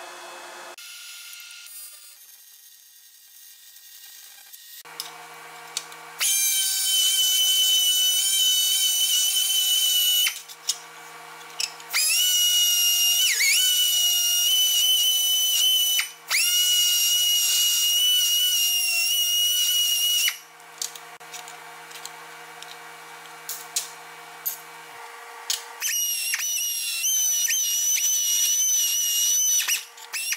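Handheld die grinder with a burr working a weld seam on an aluminium sheet-metal pipe: a high-pitched whine in four runs of a few seconds each, the pitch sagging once as it bites into the metal.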